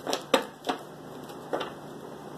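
Tarot cards being shuffled by hand: four short, crisp card snaps, unevenly spaced.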